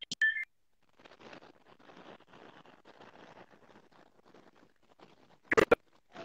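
A short beep-like tone at the start, then faint hiss, and two sharp clicks near the end: handling noise from a handheld microphone on a livestream audio feed.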